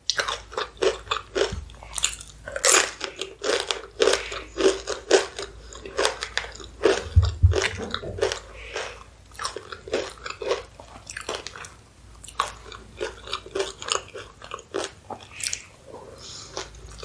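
Close-miked mouth sounds of crunching and chewing crisp corn tortilla chips dipped in cheese sauce. The crackly crunches come thick and fast through the first half and thin out to scattered bites later.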